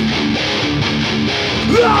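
Hardcore punk song in a short guitar break: a distorted electric guitar playing a chugging riff on its own, without drums or cymbals. A shouted vocal comes in near the end as the full band returns.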